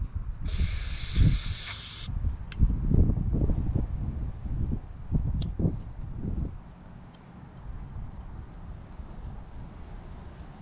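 An aerosol cleaner is sprayed in one burst of about a second and a half into a small engine's carburetor float bowl, to wash out varnish left by old fuel. After it come rustling and light knocks as the carburetor and a screwdriver are handled.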